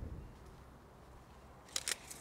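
Quiet background with a faint low rumble that fades over the first half second, then two short sharp clicks shortly before the end.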